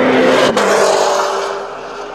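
A car passing by at speed: its engine note grows louder, drops in pitch as it goes past about half a second in, then fades away.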